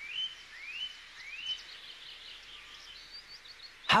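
A bird chirping: three short rising chirps in the first second and a half, then fainter, higher chirps.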